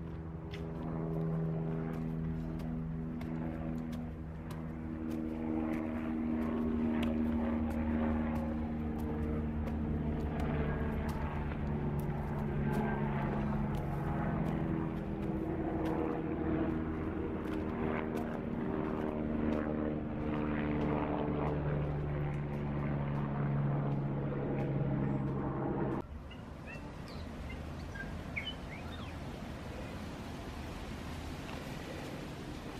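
Propeller aircraft engine droning overhead, a steady multi-tone drone whose pitch shifts slowly as it passes. The drone cuts off suddenly about 26 seconds in, leaving faint outdoor background.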